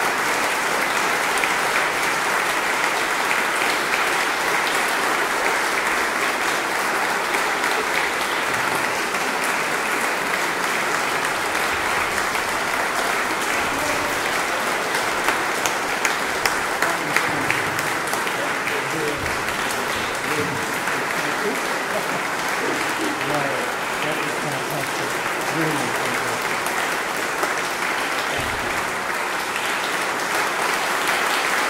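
Audience applauding steadily after a chamber performance, with a few louder claps in the middle and faint voices under it in the second half.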